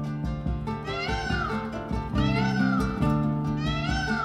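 Three high animal calls, each rising and then falling in pitch, about a second and a quarter apart, over acoustic guitar background music.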